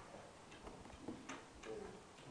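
Faint, irregular light clicks over quiet room noise.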